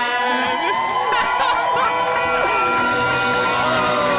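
A live band performance with a crowd cheering, shouting and singing along over sustained musical notes.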